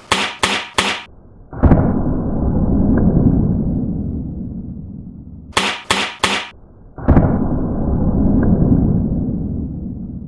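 A .22 air rifle shot: a sharp report about one and a half seconds in, followed by a long low rumble that fades over several seconds. The same short-bursts-then-shot sequence comes again about five and a half seconds later.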